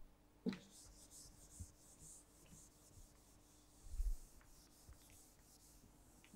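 Felt whiteboard eraser wiping a whiteboard in short, quick back-and-forth strokes, a faint dry rubbing. The strokes come in two spells, about a second in and again around four to five seconds, with a dull low thump near four seconds in.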